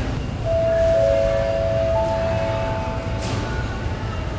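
Airport public-address chime that opens an announcement: three sustained bell-like notes, a middle one about half a second in, a lower one half a second later and a higher one at about two seconds, ringing together and fading out after about three seconds. Steady low background rumble of the terminal hall underneath.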